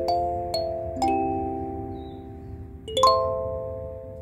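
Wooden 17-key kalimba plucked with the thumbs: three notes about half a second apart in the first second, then after a pause two quick strokes near three seconds that sound several tines together. Each metal tine rings on and fades slowly, so the notes overlap.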